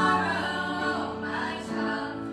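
Several voices singing a gospel song in harmony, holding long notes, with a change of note near the start and again near the end.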